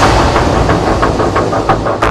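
Dramatic background music with a deep bass line and repeated percussive hits.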